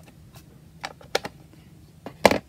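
A few light, sharp taps as a foam ink blending tool is dabbed onto an ink pad to load the sponge with ink.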